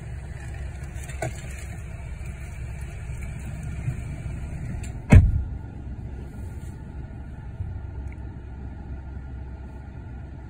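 Car engine idling, heard from inside the cabin as a steady low rumble. About five seconds in there is a single heavy thump, typical of a car door being shut, and a high hiss stops with it.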